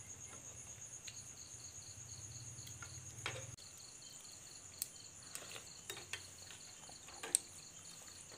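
Night crickets chirping steadily in high, evenly pulsing trills, at least two voices at different pitches. Scattered light clicks and taps sound over them.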